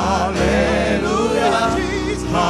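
Gospel praise team of several voices singing together through microphones, with steady low held notes underneath.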